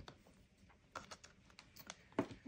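Near silence, broken by a few faint light clicks from about a second in and again near the end.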